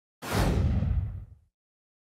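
Whoosh sound effect with a deep boom under it, as for a logo reveal. It starts suddenly, its hiss fades within half a second, and the low rumble dies away after about a second.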